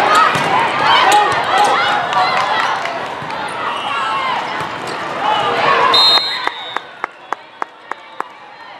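Players and spectators shouting over one another in a large hall during a volleyball rally, with sharp hits of the ball. About six seconds in a short high whistle blast ends the rally, the voices fall away, and a string of sharp claps follows, about three a second.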